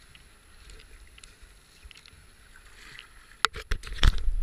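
Kayak gliding down a foamy river: a faint hiss of water along the hull with light paddle drips and splashes. Near the end come several sharp knocks in quick succession.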